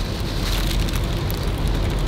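Paper sandwich wrapper rustling and crinkling as it is handled, a steady crackly noise.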